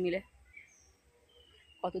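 A few faint bird chirps during a pause between a woman's words, one a slightly longer thin whistle shortly before she speaks again.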